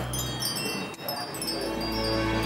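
Hanging metal-tube wind chimes ringing, many clear tones overlapping and sustaining.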